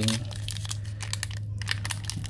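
Plastic foil wrapper of a 2021 Donruss basketball card pack being torn open and crinkled in the hands: a quick run of crackles and rips, over a steady low hum.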